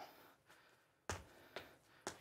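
Two soft thuds of a sports shoe landing on a wooden floor during one-legged hopping, about a second in and half a second apart, the two touches of a double-bounce hop.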